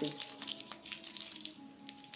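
Crinkling and tearing of a thin plastic seal being peeled off a small lip tint tube by hand, a scatter of small crackles, over faint background music.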